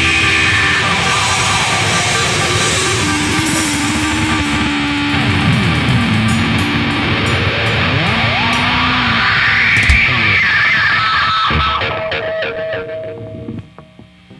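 Live metal band playing loud, with heavy electric guitar through a Marshall amp stack and drums; in the middle the guitar slides down and back up in pitch. Near the end the playing drops away to a quieter held note.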